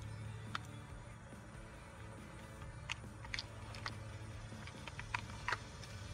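Faint steady low hum, with a handful of short, sharp light clicks scattered irregularly through it.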